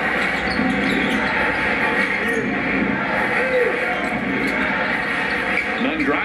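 Basketball game broadcast heard through a TV speaker: steady arena crowd noise with the ball being dribbled and sneakers on the court.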